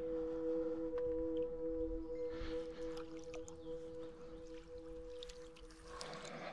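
Background music: a soft, sustained two-note drone held steady, fading out near the end.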